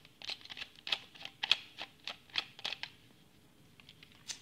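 A quick, irregular run of small clicks and scratches from a screwdriver and fingers working at the terminal screws and plastic back of a USB double wall socket, dying away about three seconds in.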